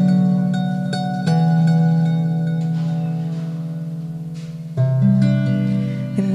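Kanklės, the Lithuanian plucked box zither, playing an instrumental passage. A few plucked chords in the first second and a half are left to ring and fade slowly, and a fresh, stronger chord comes in about five seconds in.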